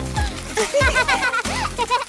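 Background music with laughing, squealing voices of a woman and a girl, over splashing sounds as handfuls of blue shredded paper are tossed in a cardboard pretend pool.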